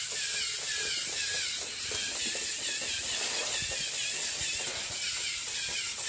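Lego EV3 Theo Jansen–style walking robot running: its motors and plastic leg linkages whir with a steady hiss, and its plastic feet tap on the wooden floor in a quick, irregular patter.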